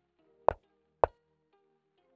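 Two wooden-sounding piece-move clicks from an online chess board, about half a second apart: one for the player's bishop move and one for the opponent's reply. Soft background music plays under them.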